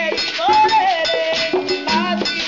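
Live Afro-Cuban Santería ceremonial music: a sung Yoruba chant over rhythmic percussion, with a beaded gourd chekeré shaken close by. The voice rises about half a second in, then falls and holds one note.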